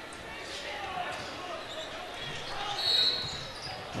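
Basketball gym sound: a ball bouncing on the hardwood court over a murmuring crowd, with a short high-pitched whistle blast about three seconds in, the referee's whistle for a foul on the inbound.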